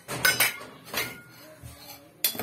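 A metal spoon clinking against a utensil, three light metallic clinks: two close together just after the start and one about a second in, each with a brief ring, as a spoonful of ghee is taken up for the kadhai.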